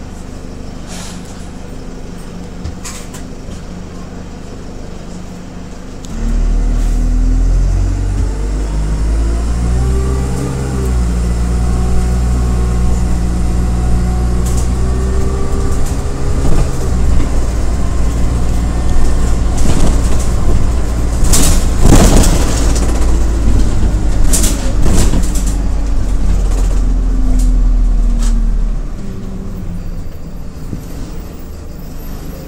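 Single-deck Stagecoach bus, fleet number 34459, with its diesel engine idling. About six seconds in, the engine revs up and the bus pulls away, the engine note climbing with brief breaks at the gear changes. Several sharp hisses of air come a little past the middle, and the engine settles back to idle near the end.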